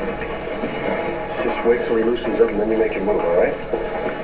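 Movie soundtrack played through a television speaker and picked up off the room: indistinct voices over a steady background hubbub, with a clearer spell of talk in the middle.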